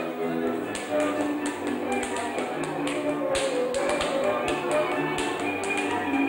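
A Transylvanian folk string band, with fiddle, plays a men's dance tune. Over it come sharp, irregular taps and stamps of a dancer's shoes on a hard floor, several a second.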